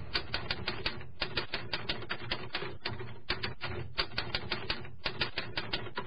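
Typewriter key-strike sound effect: rapid clicks, about five a second, in short runs broken by brief pauses, keeping time with a caption being typed onto the screen.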